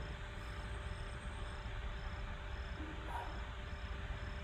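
Faint background noise with a cricket chirping, a short high chirp repeating evenly about twice a second, over a low hum.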